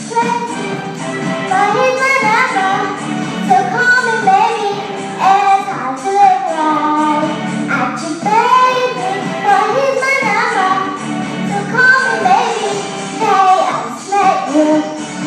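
A young girl singing into a microphone over a recorded backing track, amplified through speakers.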